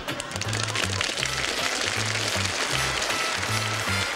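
Sitcom closing theme music: an upbeat instrumental tune over a bass line that steps from note to note.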